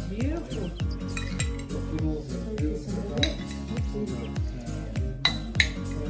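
Background music with a steady, repeating bass beat. Over it, a metal spoon clinks against a ceramic bowl a few times, most sharply about three seconds in and twice near the end.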